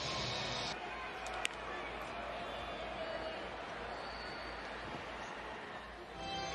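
Baseball stadium crowd noise, a steady background of many voices, with one sharp click about a second and a half in.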